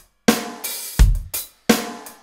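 Electronic drum kit playing a slowed-down rock groove: deep kick hits under snare and hi-hat or cymbal strokes, about two to three strikes a second.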